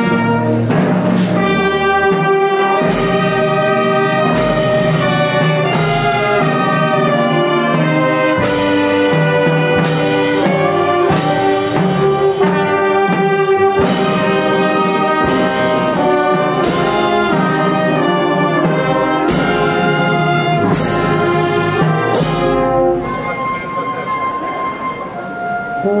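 Marching band of clarinets, flutes and brass, with euphoniums and tubas, playing a slow march with a sharp struck beat about every second and a half. It plays more softly near the end.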